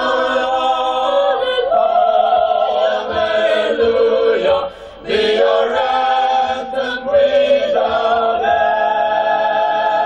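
A mixed choir of men's and women's voices sings a hymn in harmony. There is a brief break about five seconds in, and the phrase ends on a long held chord.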